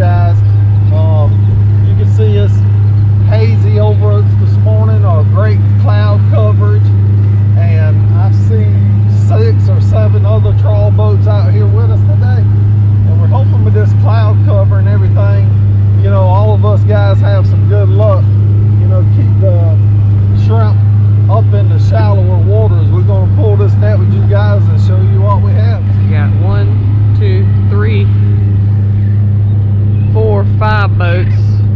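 90 hp Yamaha outboard motor running at a steady speed, a constant low drone that does not change.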